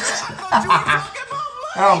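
A man laughing and snickering, then saying 'oh' near the end.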